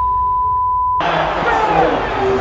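A censor bleep: one steady beep lasting about a second, covering a spoken word. Then the stadium crowd and sideline voices come back in.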